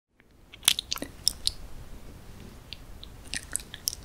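Close-miked chewing of moist chocolate cake: wet, sticky mouth clicks and smacks, coming in two clusters, about a second in and again near the end.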